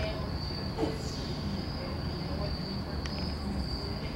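Crickets trilling in one steady, high-pitched continuous tone, over a low rumble.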